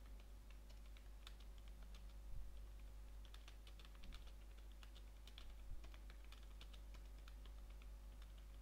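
Typing on a computer keyboard: a quick, irregular run of quiet key clicks, with a few heavier key thumps, over a faint steady low hum.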